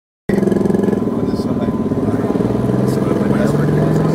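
An engine running steadily, cutting in abruptly, its pitch stepping up slightly partway through, with voices mixed in.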